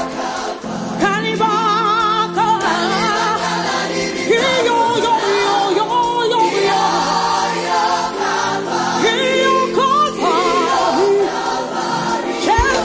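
Live gospel music: a choir and lead voice sing long, wavering held notes over a band's sustained keyboard chords.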